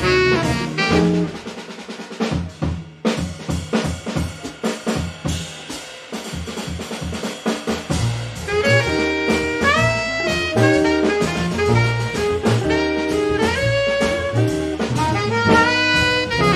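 Live jazz quartet: drum kit plays alone with snare and cymbal strokes for several seconds, then saxophone, bass and guitar come back in about halfway through, the saxophone carrying a melody with held notes.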